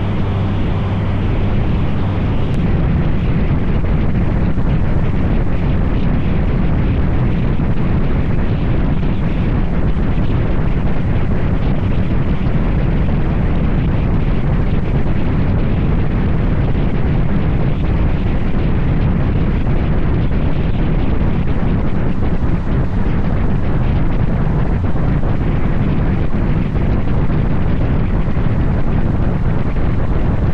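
Wind buffeting the microphone of a three-wheeled motorcycle at road speed, a loud, steady low rumble with the engine and tyre noise buried beneath it.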